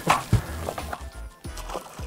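Background music with a low, steady beat.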